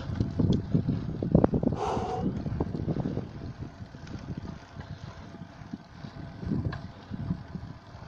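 Wind buffeting the microphone of a camera carried on a bicycle riding uphill, an uneven gusty rumble that is strongest in the first three seconds and then eases. A brief hiss comes about two seconds in.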